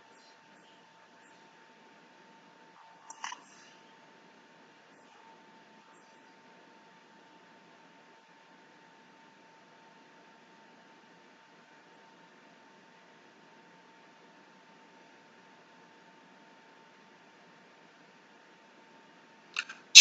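Very quiet room tone with a faint steady hum and one brief soft click a little after three seconds in.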